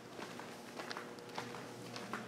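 Footsteps walking along a cave walkway: a run of soft, irregular steps, several a second.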